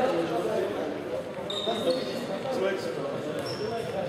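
Futsal in a large echoing sports hall: indistinct players' voices, a few ball knocks, and short high squeaks of sneakers on the wooden floor about halfway through and near the end.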